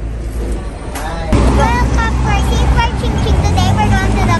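Quiet indoor room sound, then, about a second in, a sudden switch to busy street noise: a steady low rumble of traffic with people's voices over it.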